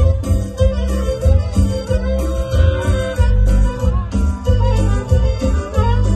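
Live dance music from street performers, with a strong, steady bass beat and a held keyboard-like tone over it.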